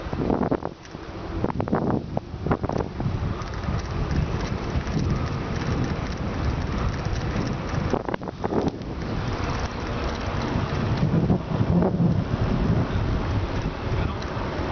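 Wind buffeting the camera microphone: a loud, rumbling noise that rises and falls unevenly.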